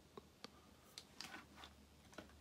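Near silence with a few faint, short clicks, from a piezo buzzer's wire and a soldering iron being handled at the meter's circuit board.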